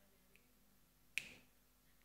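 Near silence broken by a single sharp click about a second in, with a short ring-out.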